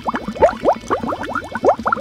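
A bubbling sound effect: a rapid, irregular string of short blips, each rising quickly in pitch, like bubbles in water.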